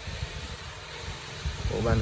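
Low rumble and a few soft knocks as a heavy hand-carved solid-wood bench is lowered onto the floor, followed near the end by a man starting to speak.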